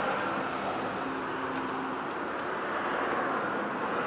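Steady vehicle noise: a continuous hum and hiss with no distinct events.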